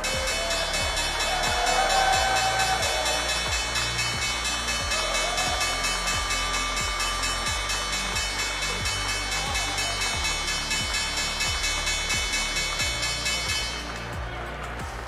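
The New York Stock Exchange's electric opening bell ringing continuously for about fourteen seconds, starting and cutting off suddenly, over applause and background music.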